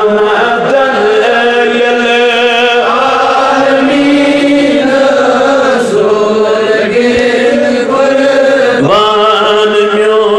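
A man's voice chanting melodically, with long held notes that waver and slide in pitch, much as a naat or devotional verse is sung in a sermon.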